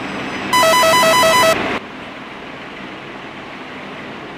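Electronic ringing tone: a loud, rapid pulsing beep of several pitches, about five pulses in just over a second, then it cuts off and leaves a steady hiss.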